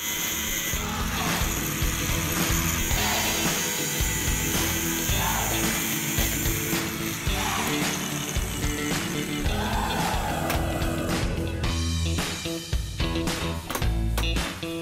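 Angle grinder with a cut-off disc cutting through flat steel bar, a harsh high grinding hiss whose pitch dips each time the disc bites. The grinding stops about halfway through. Background music plays throughout.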